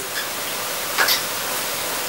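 Steady hiss of background recording noise, with a short breath about a second in.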